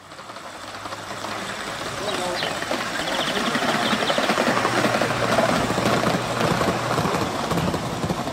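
Gauge 3 model of a Stanier 'Black Five' 4-6-0 steam locomotive with coaches running along a raised garden track, its wheels clattering rapidly over the rails. The sound grows louder as the train nears and is loudest about five seconds in.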